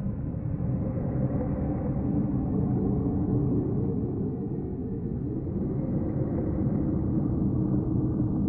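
Steady low rumbling drone of a dark ambient outro soundtrack, with no sharp strikes or changes.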